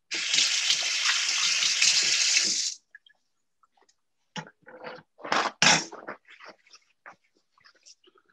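Kitchen tap running for hand washing, a steady rush of water for nearly three seconds that cuts off suddenly. A scatter of short knocks and clatter follows.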